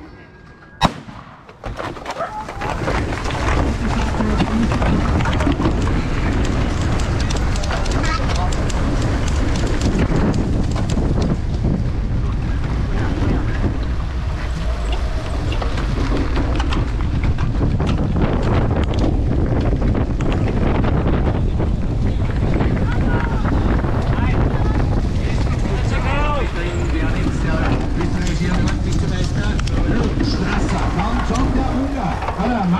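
A sharp bang about a second in. Then wind buffets an action camera's microphone, with tyres rumbling and the cyclocross bike rattling over grass and dirt as it races in a pack.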